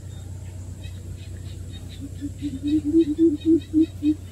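Greater coucal (bìm bịp) calling: a run of about a dozen deep hoots that starts about halfway in, coming faster, rising slightly in pitch and growing louder.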